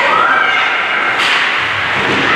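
Ice hockey play: skates scraping across the ice under a steady wash of rink noise, with one sharp knock of stick, puck or boards just over a second in.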